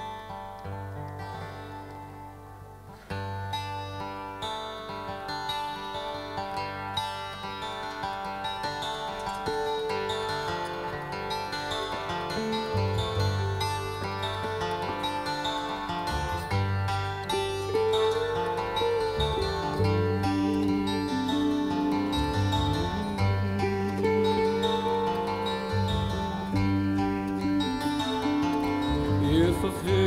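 Live folk-jazz band playing an instrumental introduction on acoustic guitar, electric guitar, vibraphone and bass. The playing builds, growing steadily louder through the passage.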